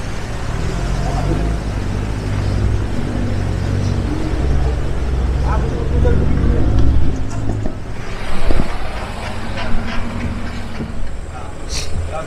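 A four-wheel-drive vehicle's engine running steadily as it drives slowly along a rough dirt track. About eight seconds in the sound changes to a lower drone with scattered knocks and clatters.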